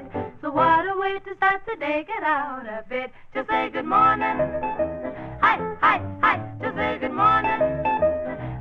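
Female vocal trio singing a swing-style country song in close harmony, with wordless yodel-like passages that swoop and leap in pitch, including a long downward slide a couple of seconds in, over a band with a steady bass pulse.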